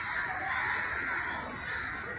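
Harsh, raspy bird calls, loudest about half a second to a second in, over steady outdoor background noise.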